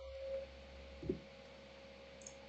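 Faint room tone in a pause in the talk: a thin, steady hum, with one brief faint sound about a second in.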